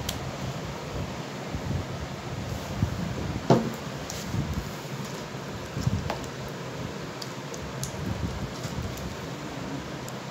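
Gloved hands working a thick ginger-garlic-green-chilli paste into raw chicken legs in a stainless steel bowl: soft wet handling and rubbing sounds over a steady fan-like hum, with a sharp knock against the bowl about three and a half seconds in and a smaller one near six seconds.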